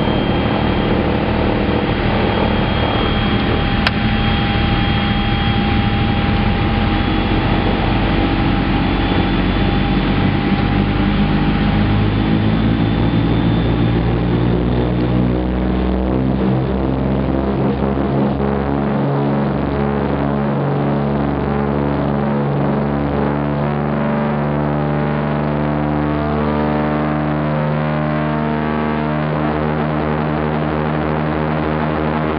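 Twin radial piston engines of a DC-3 Dakota running, heard from inside the cabin as a steady drone with shifting engine tones. About halfway through, the engine tones become cleaner and more evenly stacked. A faint single click about four seconds in.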